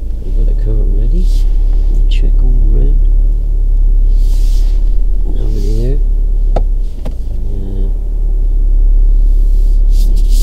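Steady low rumble of a car heard inside its cabin as it starts moving slowly, easing briefly about seven seconds in, with a few soft murmured words over it.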